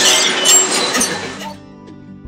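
Busy, noisy room sound with a few short high beeps, cut off about one and a half seconds in by quiet background music.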